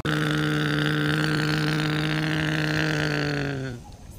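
Battery-powered toy excavator's small electric motor and gearbox whirring at a steady pitch as it drives on its tracks, starting abruptly and winding down near the end.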